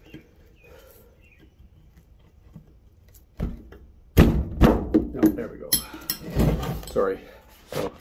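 Wrench clinking and knocking against a steel brake caliper as its tight 11 mm bleeder screw is worked, the first knock coming a little over three seconds in and a run of clanks and thuds following, with some muttered voice sounds among them.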